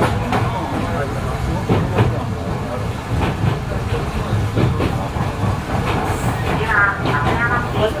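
Suburban electric train running along the track, heard from inside, with a steady rumble and the wheels knocking over rail joints.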